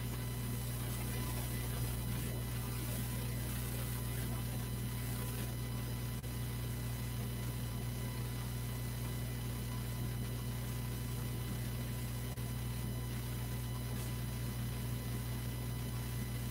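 Steady electrical hum with faint hiss, the room tone of the recording setup, with two faint ticks, one about six seconds in and one about twelve seconds in.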